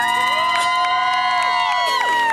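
Crowd whooping at the end of a song: several voices hold long 'woo' shouts that swoop up, stay level, and start to fall away near the end, with a few scattered claps.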